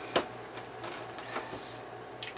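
A single sharp tap a moment in, then a few faint ticks of things being handled on a tabletop, over a steady low hum.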